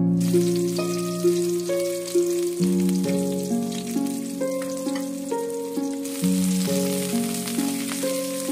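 Sliced onion sizzling in hot oil in a wok, a steady hiss that grows a little in the second half. Over it, and louder, background music of plucked-string notes.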